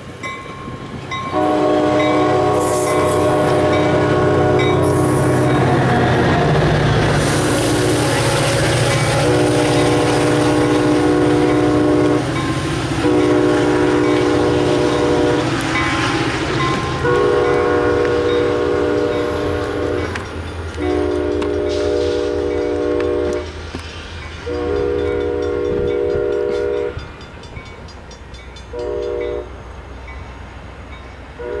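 ACE commuter train: low rumble of the rail cars rolling past close by, then the locomotive's horn sounding a chord of several tones in seven blasts, a long first blast, five of about three seconds each, and a short one near the end. The horn is sounded as the train approaches a grade crossing.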